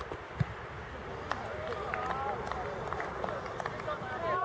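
Distant shouts and calls of players on a football pitch over steady outdoor background noise, with a single dull thump about half a second in.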